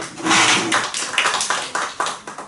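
A small group applauding: a brief round of many quick hand claps.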